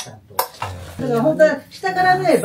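Two sharp clicks in the first half second, then a person's voice from about a second in.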